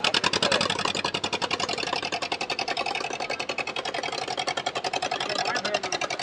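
Engine of a wooden motor boat on the river chugging at a rapid, even beat of more than ten pulses a second. It starts suddenly at the opening and holds steady throughout.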